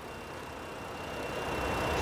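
A 2019 Dodge Journey's 3.6-litre Pentastar V6, heard up close under the open hood, idling steadily with a low hum, a faint steady high whine and no knocks. It grows louder over the second half.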